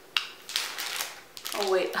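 Plastic packaging being handled: a few sharp clicks and crinkles, the first and loudest just after the start.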